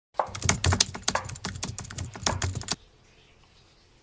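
A large kitchen knife chopping quickly through white radish onto a wooden cutting board: a rapid run of sharp knocks, several a second, that stops a little before three seconds in.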